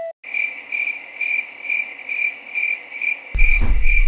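Cricket chirping sound effect: a steady high trill pulsing about four times a second, the stock cue for a dazed, awkward silence. A low rumble comes in near the end.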